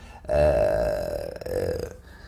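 A man's low, croaky, drawn-out vocal sound, held for about a second and a half.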